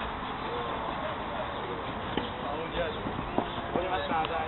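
Footballers' voices calling out during play on a five-a-side pitch, short and scattered over steady background noise, with a few sharp knocks from the play in the second half.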